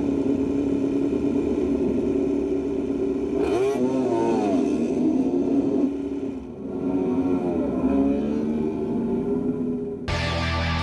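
MotoGP racing motorcycle engines running loud, with revs rising and falling twice, about three and a half and seven seconds in.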